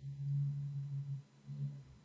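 A woman's low, closed-mouth hesitation hum ('mmm'), one steady tone held for about a second, then a shorter one.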